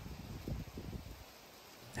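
Faint wind gusting on the microphone, low rumbling puffs that die away over the second half to near silence.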